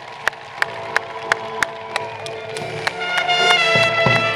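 Military brass band playing: trumpets and tubas sound sustained chords over sharp beats about three a second. The band grows louder and fuller about three seconds in.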